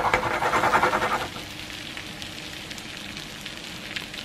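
Grated potato rösti sizzling in a nonstick frying pan, its uncooked side just turned down onto the hot pan to brown. The sizzle is louder for about the first second, then settles to a steady, quieter crackle.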